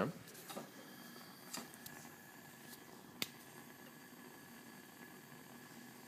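Quiet, with a few faint metal clicks and one sharper click about three seconds in, as the iron ring's clamp is loosened and slid down the steel rod of the ring stand.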